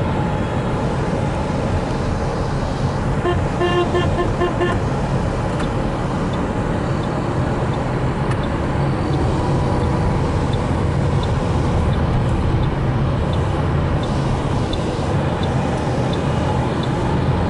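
City road traffic heard from inside a car: a steady engine and road hum, with a vehicle horn beeping rapidly several times for about a second and a half, a few seconds in.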